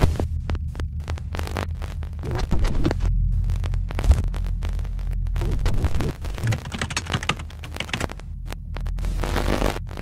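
Intro sound design: a deep, steady bass hum with bursts of crackling glitch static cutting in and out over it.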